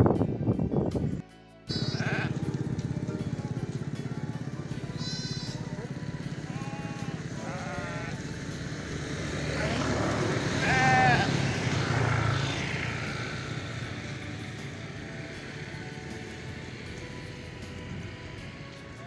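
Sheep bleating several times over steady background music, the loudest bleat about eleven seconds in.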